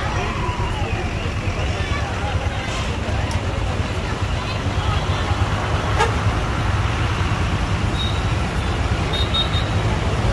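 Lorry engines running in busy road traffic, a steady low rumble, with people talking in the background.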